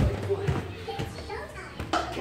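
Faint children's voices in the background, broken by several low thumps about half a second apart.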